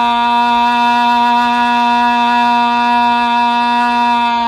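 A male blues singer holding one long, steady sung note.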